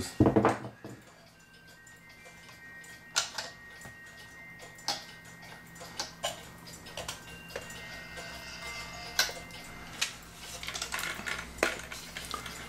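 A cuckoo clock's built-in music box playing faintly: single steel-comb notes ringing on, with several sharp clicks from the clock works being handled. The tune is so light because the comb needs to be pulled closer to get the sound out of it.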